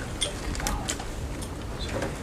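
Press camera shutters clicking irregularly, about five times, over low room murmur.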